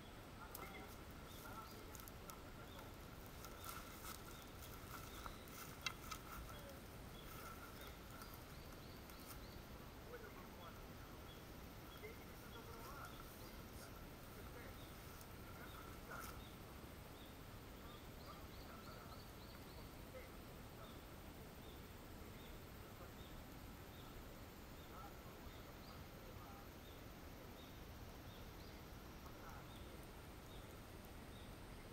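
Faint woodland ambience: a bird repeats a short high chirp about once a second, and twice gives a brief quick trill. A few light clicks and rustles come in the first six seconds, one sharper than the rest.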